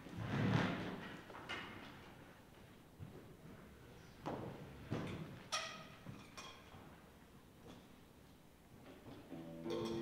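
Handling noise from musicians resetting on stage: a heavy thump just after the start, then scattered knocks and clicks, one with a brief ringing pitch. Near the end, an instrument begins holding steady notes.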